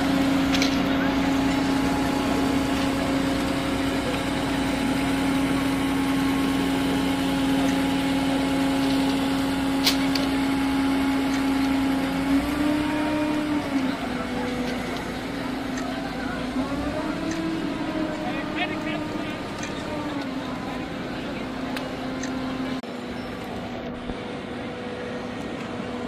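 Multirotor camera drone's propellers whining steadily. The pitch steps up briefly about halfway through and rises and falls again a few seconds later as the drone manoeuvres.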